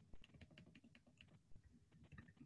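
Faint computer keyboard typing: an irregular run of key clicks, several a second.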